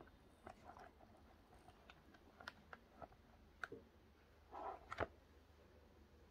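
Faint clicks and soft rubbing of a flexible silicone mould being pressed to pop out a hardened epoxy resin cabochon, ending in a sharper click about five seconds in.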